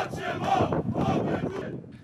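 A small crowd of football fans shouting and chanting, several voices at once, dying down toward the end.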